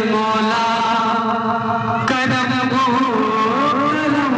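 Amplified live qawwali music from a banjo party band through a loud outdoor sound system: a held melody line that changes note about half a second in and again about two seconds in, with little drumming.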